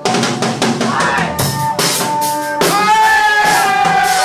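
Rock band playing loud music: a drum kit hitting steadily with electric guitars, and a long held note coming in a little past halfway and slowly sagging in pitch.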